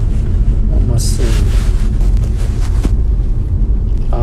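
A steady low rumble, with a short burst of a man's voice and a breathy hiss about a second in.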